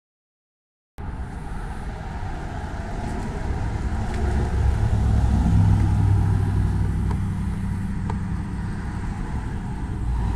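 Road traffic: a vehicle going by, a low rumble that begins abruptly about a second in, swells to its loudest in the middle and eases off again.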